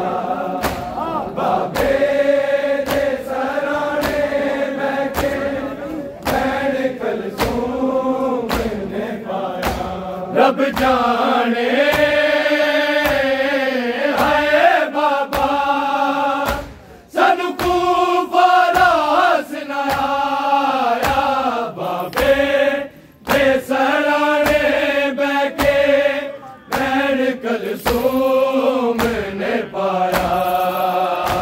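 A Punjabi noha chanted by a chorus of men, with steady rhythmic chest-beating (matam) striking in time with the lament. The singing breaks off briefly twice, about halfway through and again a few seconds later.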